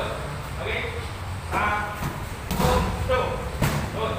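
Boxing-gloved punches smacking against Thai pads held by a coach, three sharp impacts about a second apart.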